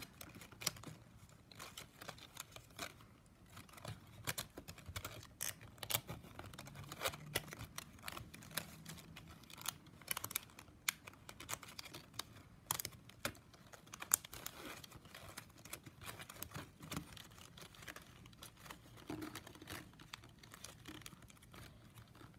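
Plastic strapping band strips being handled and woven, rubbing and clicking against each other as they are folded and pressed flat: faint, irregular crinkles and small clicks.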